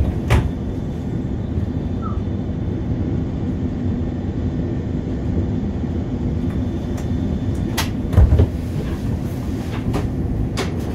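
Steady low hum of a Škoda RegioPanter electric multiple unit heard inside its driver's cab. A few sharp clicks and, about eight seconds in, a louder low thump break the hum.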